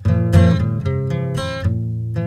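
Background music: strummed acoustic guitar chords, struck about twice a second, with no singing. The music comes in strongly right at the start after a short dip.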